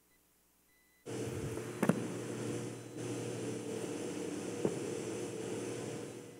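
Faint steady hum and hiss of room tone that cuts in abruptly about a second in after dead silence, with two small knocks or clicks, one about two seconds in and one near five seconds.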